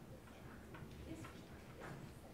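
Faint meeting-room background noise picked up by a live microphone, with a few soft clicks and knocks scattered through it.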